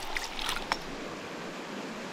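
Shallow creek water running steadily, with a few light splashes and drips in the first second as a brook trout held in a hand is lowered into the water.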